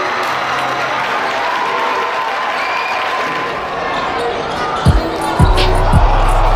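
Basketball game sound in a gymnasium: crowd chatter and a ball dribbling on the hardwood floor. About five seconds in, two heavy low thumps sound and a steady deep bass line of music comes in.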